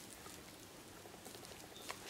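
Faint rustling of tissue paper wrapped around a handbag as it is handled, with a small click near the end.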